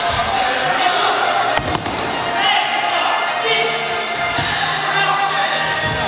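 Voices talking in a training hall, with a few sharp thuds on the floor, the clearest about a second and a half in.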